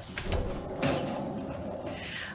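A door closing with a soft thump.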